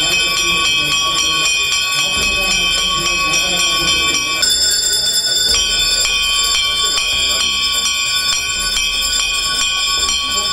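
Temple bells rung steadily and rapidly during an aarti, giving a continuous metallic ringing of several overlapping high tones. The ringing changes briefly about halfway through, and voices murmur underneath.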